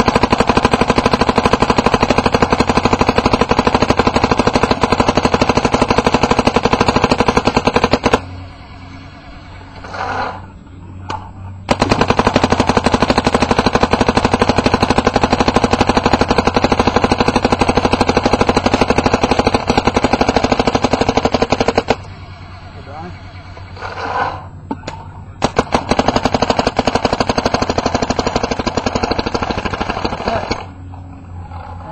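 Smart Parts Shocker NXT paintball marker firing in long, fast strings of shots. It stops for a few seconds about a quarter of the way in, and again about three quarters of the way through, then fires on.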